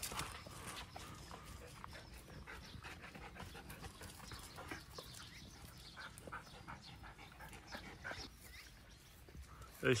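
Dogs tearing and chewing grass: faint, irregular crunching and clicking.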